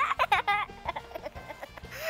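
High-pitched, sped-up cartoon giggling over background music, strongest in the first half second and fading to quieter chatter after.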